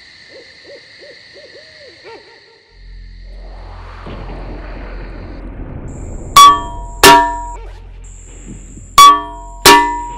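An owl hooting softly several times in quick succession, then a low rumbling night ambience swells. Four loud, ringing metallic strikes follow in two pairs, the second pair near the end.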